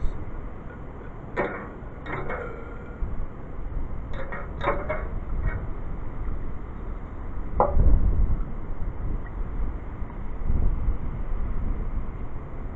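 Wind buffeting the microphone in uneven gusts, with a few light clicks and clinks scattered through it.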